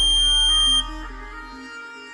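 Piezo buzzer on Arduino ultrasonic-sensor goggles sounding one steady, high-pitched beep that cuts off just under a second in, over background music. The buzzer sounds when an obstacle comes within about 12 cm of the sensor.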